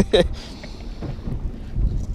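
Wind buffeting the microphone on an open boat, a steady low rumble, with the tail end of a laugh in the first moment.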